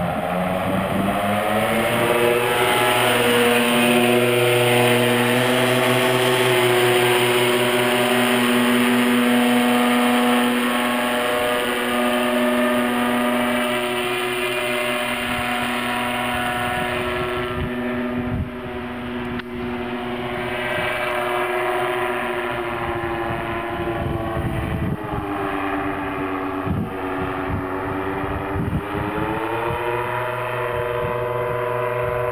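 Paramotor engine and propeller running at high power, its pitch climbing over the first couple of seconds and then holding steady. Around the middle the note drops and turns rougher, then rises again as the throttle is opened near the end.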